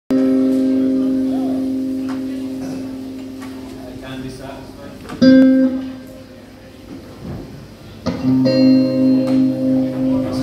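Electric guitar notes plucked and left to ring on their own: one note fading slowly over the first five seconds, a fresh pluck about five seconds in, and another about eight seconds in that holds with a slight waver, as the guitar is checked for tuning.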